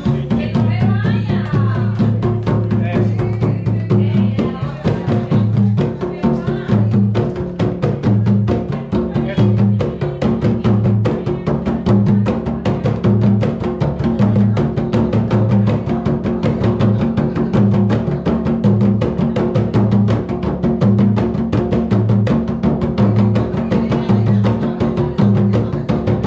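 A group of rope-tuned, skin-headed Colombian hand drums played together by hand in a steady repeating rhythm. Deep open tones come about once a second under a fast, even run of sharp strokes.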